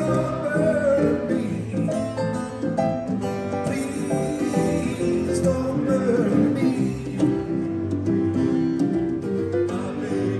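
Live acoustic band music: a strummed acoustic guitar with other instruments and a male voice singing.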